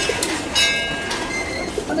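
Pigeons cooing, with short high chirping calls from birds.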